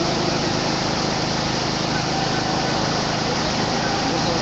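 A steady mechanical drone with a low, even hum and a wide hiss over it, unchanging throughout, like a running engine or motor.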